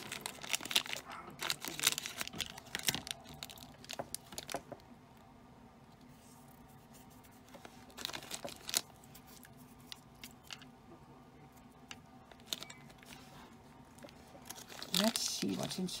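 Thin plastic blind-bag wrapper crinkling and tearing as it is pulled open by hand, in a dense run of crackles over the first few seconds and another short burst about eight seconds in.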